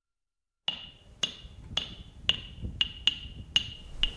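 Sharp ticks at a steady pace of about two a second, each with a brief high ring, starting a little under a second in after silence.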